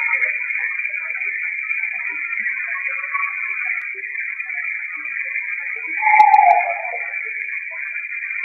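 Playback of a processed, noise-cleaned phone voice recording: hiss squeezed into a narrow band, with faint scattered fragments and a louder short falling tone about six seconds in. The recording is searched for a faint background conversation, taken as voices in the place.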